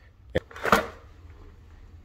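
Handling noise from a phone being turned around in the hand: a sharp click, then a brief louder rustle of fingers on the phone body.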